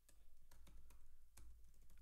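Faint typing on a computer keyboard: a quick run of about a dozen keystrokes as a line of code is typed.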